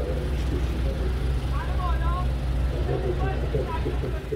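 Steady low engine rumble of a vehicle idling in a city street, with faint voices in the distance.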